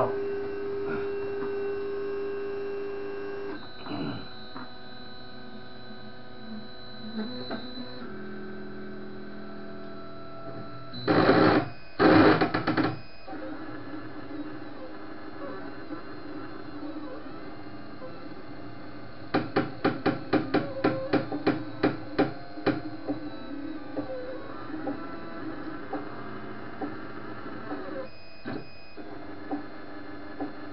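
Anet ET4+ 3D printer starting a print: its stepper motors whine at pitches that change as the print head moves into position, over the steady hum of its fans. Two loud bursts come a little before halfway, then a quick run of about fifteen clicks, about four a second, some two-thirds of the way through.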